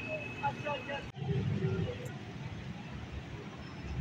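Outdoor urban ambience of scattered voices over a low traffic rumble. A thin steady high tone sounds during the first second. The sound breaks off abruptly at an edit about a second in, after which the low rumble is louder for a moment.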